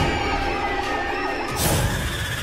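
Horror trailer sound design: many overlapping wailing tones glide up and down in pitch like sirens, and a sudden rushing swell comes in about one and a half seconds in.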